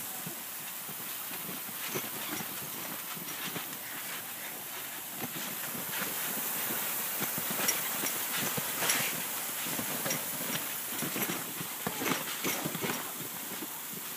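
Garden sprinkler spraying water onto a wet trampoline mat: a steady hiss with many small irregular ticks and splashes, somewhat louder in the middle.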